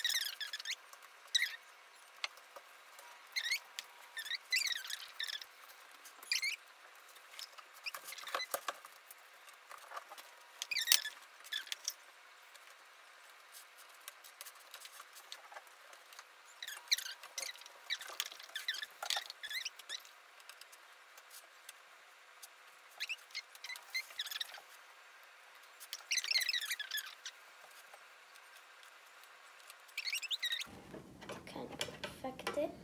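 Spatula scraping chocolate frosting out of a glass mixing bowl and spreading it on a cake: short, squeaky scrapes at irregular intervals, with quiet pauses between them.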